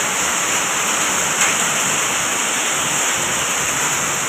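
Hailstorm: hail and heavy rain falling on the ground and nearby surfaces, a steady dense hiss and patter.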